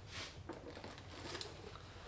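Faint handling sounds, a few soft knocks and rustles, as a knobby dirt-bike wheel and tire is lifted and turned upright, over a low room hiss.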